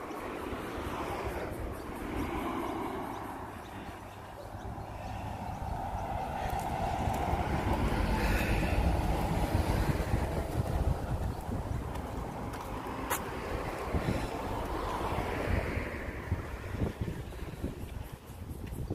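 Road traffic noise: a vehicle goes by on the street, swelling to its loudest about halfway through and then fading, with low wind rumble on the microphone.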